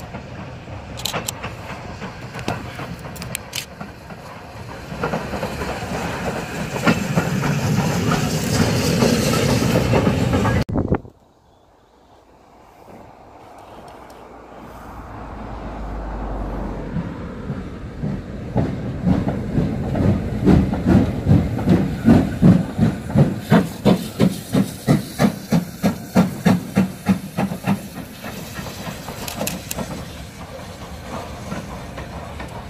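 BR Standard Class 7 'Britannia' 4-6-2 steam locomotive no. 70013 working slowly along, its exhaust chuffing in an even beat with steam hiss. The sound breaks off about eleven seconds in, then the chuffs build again to a loud, regular two to three beats a second before easing near the end.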